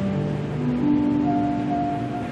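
Soft keyboard chords, notes held and changing slowly, played under a prayer.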